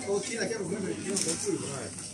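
Faint talking in the background, quieter than a voice close to the microphone, with a short hiss a little past a second in.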